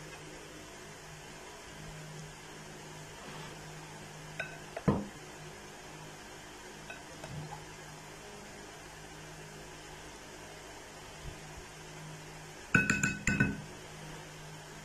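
Wooden spoon knocking against a glass mixing bowl while stirring batter-coated cauliflower florets: one knock about five seconds in, then a quick cluster of clinks near the end with the glass ringing briefly. A faint steady hum underneath.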